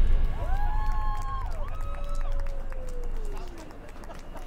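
A voice calling out a few long, drawn-out cries, the last one sliding down in pitch, over a low murmur of crowd and city noise as the music ends.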